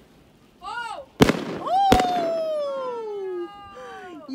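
New Year's fireworks going off: two sharp bangs close together about a second in, with a long pitched sound sliding steadily downward after the second bang.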